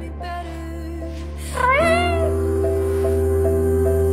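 A single cat meow about one and a half seconds in, rising and then falling in pitch, over slow background music with long held notes.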